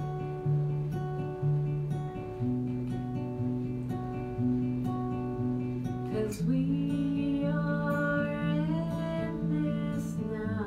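Live acoustic guitar playing a steady picked and strummed pattern, a new chord about once a second. About six seconds in, a voice comes in with a long, rising sung note over it.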